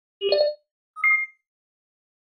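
Two short sound-effect tones of an animated logo intro: a lower pop, then about a second later a higher, ringing ding.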